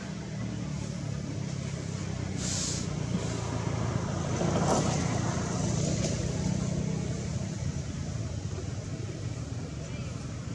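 A motor vehicle engine running steadily nearby, a low hum that grows louder towards the middle and then fades a little.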